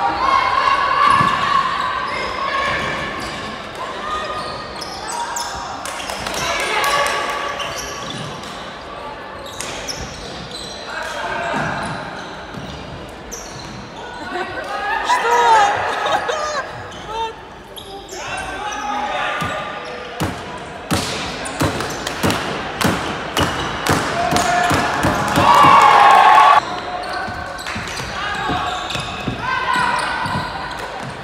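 Players shouting calls to one another during an ultimate frisbee point, echoing in a large sports hall, with running footfalls and sharp taps on the wooden court. The taps come thickest in the second half, and the loudest shout comes near the end.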